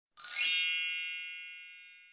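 A single bright chime rung once, just after the start, with several high ringing tones that fade away smoothly over about two seconds. It is an editing sound effect on a title card.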